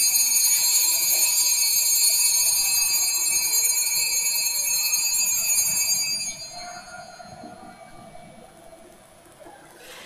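Altar bells rung steadily for about six seconds, then dying away, marking the elevation of the host just after its consecration at Mass.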